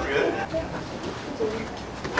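Indistinct voices of a few people talking in a room, low and unclear, with brief spoken fragments.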